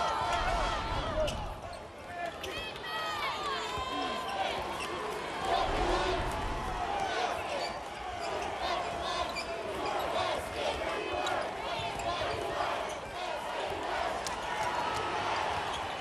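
Arena crowd noise from the stands around a hardwood basketball court, with a ball being dribbled and many short, high sneaker squeaks from players moving on the floor.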